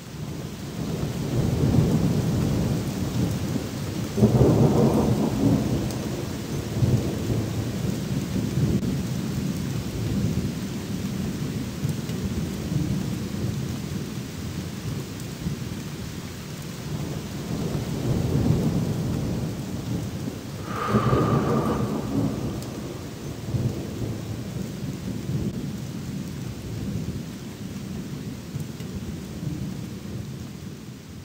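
Thunderstorm: steady rain with thunder rumbling through it, swelling a few seconds in and again about two-thirds of the way through, where a sharper peal cracks before rolling off.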